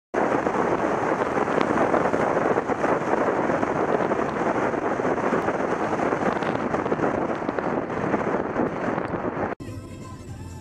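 Wind buffeting an exterior bonnet-mounted camera's microphone while the car drives at speed, a loud, rough rushing noise. It cuts off suddenly near the end.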